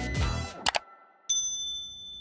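The tail of background music fades out, then two quick clicks. About a second and a third in comes a bright, high bell ding that rings on and fades: a subscribe-button and notification-bell sound effect.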